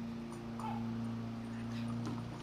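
A dog whimpering briefly, one short falling whine just over half a second in, over a steady low hum.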